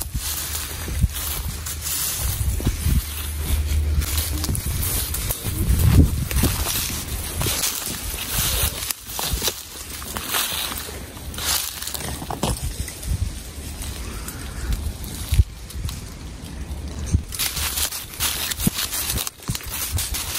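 Footsteps through dry grass and fallen leaves, with brush and twigs rustling and crackling at irregular moments, over a low steady rumble.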